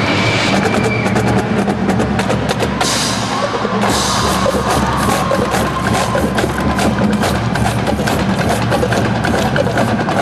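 Full marching band playing a loud, percussion-driven passage, with rapid drum strokes throughout. A cymbal crash comes about three seconds in and another about a second later, under a held wind note.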